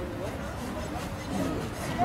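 Faint voices of people talking in the background.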